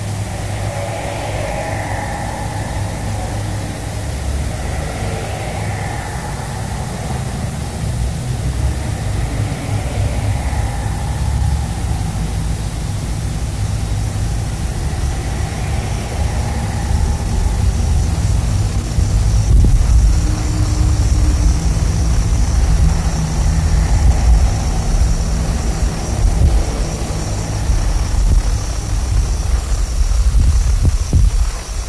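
Blizzard wind blowing across open snowy ground and buffeting the microphone: a deep, steady rumble that grows louder in the second half, with faint whistling tones that fall in pitch every few seconds in the first half.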